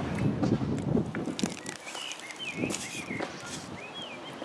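Close-up eating sounds: biting and chewing a chicken gyro in pitta, with its paper wrapper rustling, loudest in the first second and a half. A bird chirps several times in the background in the second half.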